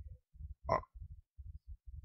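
A man's voice utters one short hesitant 'a' about two-thirds of a second in, in a pause of speech. Under it run faint, muffled low pulses at an irregular, syllable-like pace.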